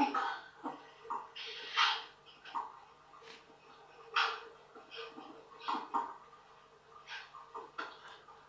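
Recorded audio from a CCTV microphone played back by a DVR through a TV's speaker: short separate sounds every second or so over a steady low hum.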